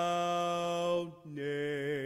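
A man singing solo and unaccompanied: a long held note that breaks off about a second in, then after a short breath a slightly lower note held with a wavering vibrato.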